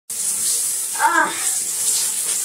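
Shower water running behind the curtain, a steady spraying hiss, with a short vocal sound about a second in.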